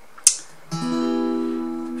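A sharp click about a quarter second in, then a chord on a capoed acoustic guitar that rings out and slowly fades.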